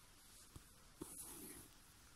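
Near silence, with a faint rustle of needle and thread being worked through fabric during hand bead embroidery, and two soft ticks about half a second and a second in.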